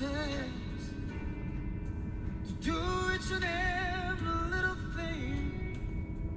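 Recorded song: a man with a raspy, powerful voice singing a ballad over soft instrumental backing. He comes in a little under three seconds in and holds long notes with vibrato.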